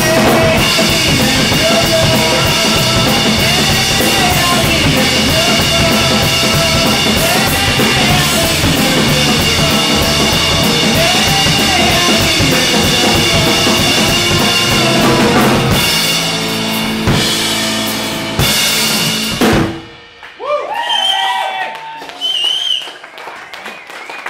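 Live rock trio of drum kit, bass and electric guitar playing an instrumental ending. The full band plays steadily for about fifteen seconds, then breaks into a few separate hits and a held chord, and stops suddenly about twenty seconds in.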